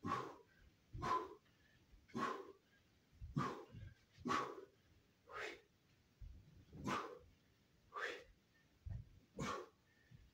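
Short, sharp forceful exhalations or shouts from a karateka, one with each strike, about one a second, nine in all. Faint low thuds of footwork fall between some of them.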